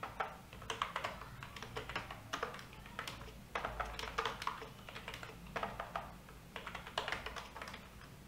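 Computer keyboard being typed on, keys struck in short irregular runs.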